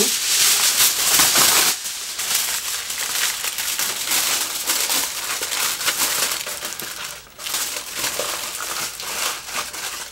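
A sheet of aluminium foil handled, crumpled and pressed by hand around a rock: continuous crinkling, loudest in the first two seconds, with a short pause about seven seconds in.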